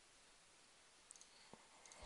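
Near silence with a few faint computer mouse clicks, the first two close together about a second in and another a moment later.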